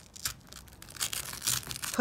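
Hook-and-loop (Velcro) fastening being peeled apart with a crackling rip as a spike strip is lifted off the vest, growing denser in the second half.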